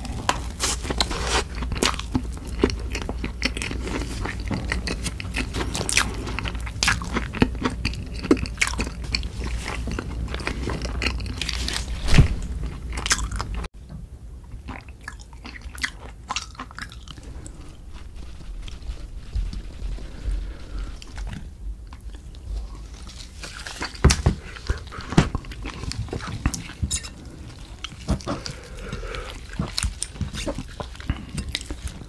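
Close-miked eating sounds: chewing a mouthful of Korean rice cake, with frequent clicks over a low steady hum. About halfway through it cuts to quieter chewing and scattered clicks as kimchi in hot red sauce is eaten and torn apart by hand.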